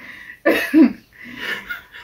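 A short, coughing laugh about half a second in, followed by quieter breathy laughter.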